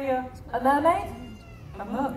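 A performer's voice making drawn-out vocal exclamations without clear words, swooping up and down in pitch. The loudest comes about half a second in and another starts near the end.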